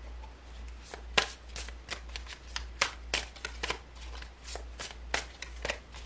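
A deck of tarot cards shuffled overhand by hand: a quick, uneven run of soft card slaps and edge clicks, about three a second, starting about a second in.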